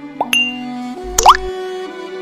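Background music with cartoon pop sound effects: a short rising pop with a bright ding about a quarter second in, then a louder rising pop a little past one second.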